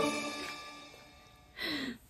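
Background Christmas music with jingle bells fading out over the first second or so. Near the end, a woman gives a short 'oh'.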